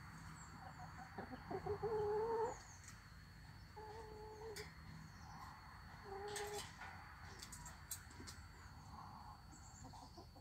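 Domestic hens calling: one drawn-out, level-pitched call about a second in, the loudest, then two shorter calls around four and six seconds in.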